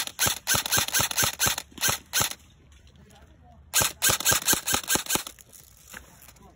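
Airsoft gun firing rapidly, about six or seven shots a second, in a burst of about two seconds, then after a short pause a second burst of about a second and a half.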